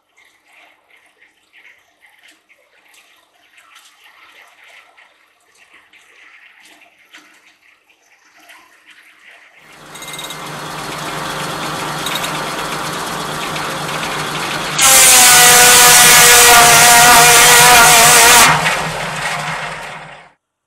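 Faint hiss and patter of sawdust falling from a blower chute onto a pile. About halfway, the homemade circular sawmill comes up loudly, running with a steady hum. About five seconds later it gets much louder, with a wavering whine as the 52-inch circular blade cuts through a log, then dies away near the end.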